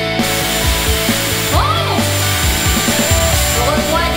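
Background rock music over the steady rush of a Dyson Airwrap blowing air through its curling barrel, with a thin high motor whine. The airflow comes on right at the start.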